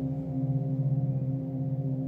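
Background meditation music: a steady low drone of sustained, ringing gong- or singing-bowl-like tones that slowly waver in level.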